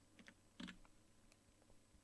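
A few faint, short clicks of computer keys, the loudest just over half a second in, over near silence.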